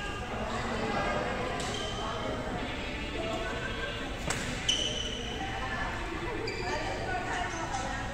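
Badminton rally in a large hall: sharp racket strikes on the shuttlecock, the loudest pair about four and a half seconds in, with short high sneaker squeaks on the court floor over a steady background of chatter.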